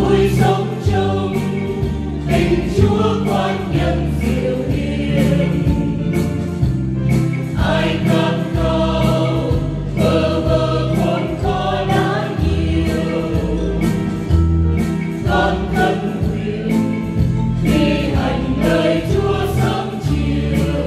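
A choir singing a Vietnamese Catholic hymn with accompaniment, going through the verse of the song.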